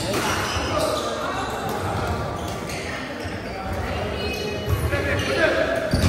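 Badminton doubles rally in a large hall: rackets hitting the shuttlecock and players' footwork on the court, with voices in the background.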